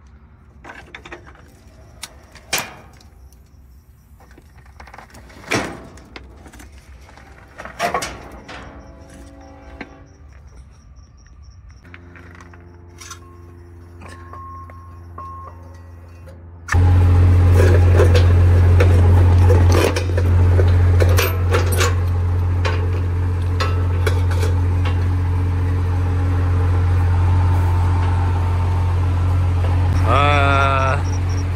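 A few sharp metallic clanks and clinks of tools and parts being handled under the truck. About 17 seconds in, a tow truck's engine comes in suddenly, running loudly and steadily with a deep hum.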